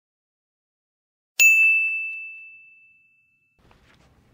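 A single high, bell-like ding, struck about a second and a half in and fading away over about two seconds.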